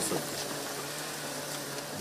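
Steady background hiss with a faint low hum underneath.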